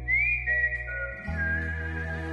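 Film background score: a high whistled melody that glides up and then steps down, over steady low sustained chords that change about a second in.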